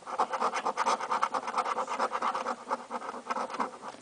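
A coin scratching the coating off a paper scratch-off lottery ticket in rapid back-and-forth strokes, stopping shortly before the end.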